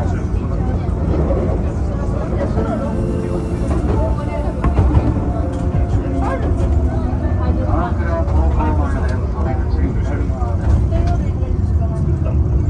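Enoden electric train running, a steady low rumble heard from inside the front car, with people talking over it.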